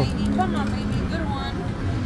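A bee-themed Konami video slot machine spinning, its electronic game sounds mixed into casino floor noise and background voices, with a steady low tone during the first second.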